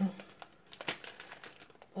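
Light rustling and small clicks of plastic nail-art practice tips being handled, with one sharp click about a second in.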